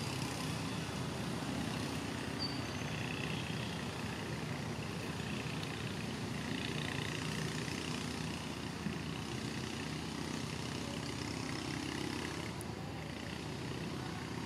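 Steady outdoor background noise with a low rumble, a few faint short high chirps near the start, and a single light tick about nine seconds in.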